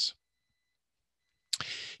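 A pause in a lecturer's narration over a microphone: about a second and a half of dead silence with a faint thin high tone. Near the end comes a single click, then a short breathy hiss just before the voice resumes.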